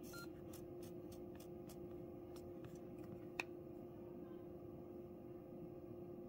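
Faint steady hum with a run of light ticks, and one sharper click with a short beep about three and a half seconds in.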